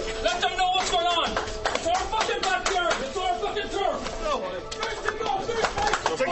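Several men shouting and yelling together in a dressing room, with sharp claps and knocks all through.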